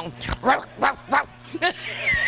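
A woman laughing into a hand microphone in a run of short, loud bursts.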